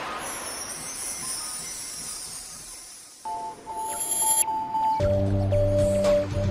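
Logo intro jingle: a high shimmering sound that fades away, then held musical notes come in about three seconds in, joined by a fuller, deep-toned chord about five seconds in.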